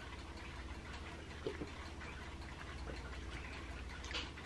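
Faint room tone with a steady low hum, and two soft gulps about a second and a half apart as a person swallows a drink from a glass.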